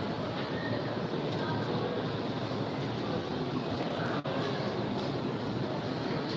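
Steady murmur of a crowd of pilgrims talking and moving around, with no single voice standing out. There is a brief dropout about four seconds in.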